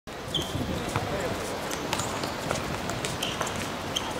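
Players' voices calling out during an amateur football match on artificial turf, with scattered sharp knocks of the ball being kicked and of footfalls.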